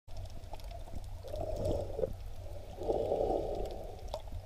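Muffled underwater water noise on a submerged camera: a steady low rumble with two swells of bubbling and sloshing, about a second in and again about three seconds in, and a few faint clicks.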